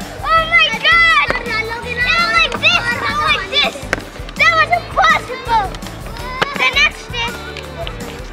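Children's excited, high-pitched calls and exclamations, with background music underneath.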